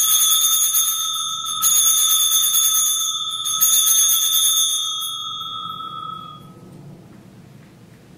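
Altar bell struck three times, at the start, about a second and a half in and about three and a half seconds in, each stroke ringing a clear, high tone that fades away over several seconds. It is the bell rung at the elevation of the chalice after the consecration at Mass.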